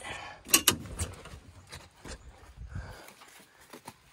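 Cab door of a Kubota utility vehicle being unlatched and opened. There are two sharp clicks about half a second in, then lighter knocks and rattles.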